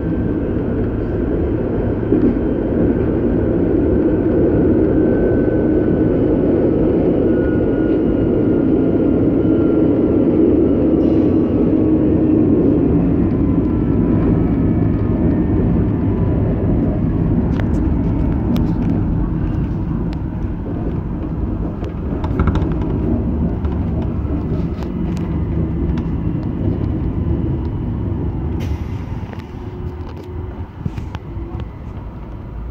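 Electric train on a metre-gauge line heard from inside its front cab while running: a steady rumble of wheels and running gear on the track, with a faint whine that slowly falls in pitch. Several sharp clicks and knocks come in the second half, and the noise eases off near the end.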